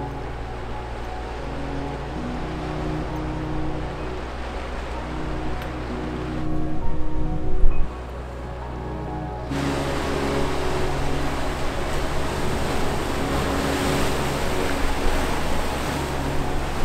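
Background music with sustained notes, mixed with the wash of ocean surf breaking on rocks; the surf is loudest in the second half.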